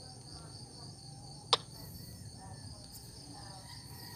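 Night insects chirring steadily in a high-pitched chorus, with one sharp click about a second and a half in.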